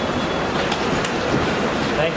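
Steady rolling rumble of airport luggage trolley and suitcase wheels on the floor, with a few faint clicks.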